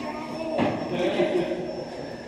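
Indistinct voices talking in the background, with a faint steady high-pitched tone underneath.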